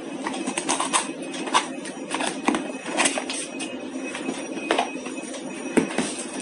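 A cardboard product box being opened and its flaps and packaging handled, giving irregular clicks, taps and scrapes throughout.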